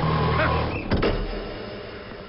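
Heavy rain hissing over a vehicle engine running, then a single sharp thud just before a second in, followed by a brief low rumble and a quieter stretch.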